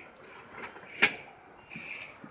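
Engine parts being picked up and handled, with a single sharp click about halfway through and faint rattles around it.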